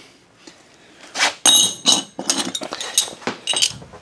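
Metal brackets being handled, clinking and knocking against each other several times, some strikes leaving a bright metallic ring.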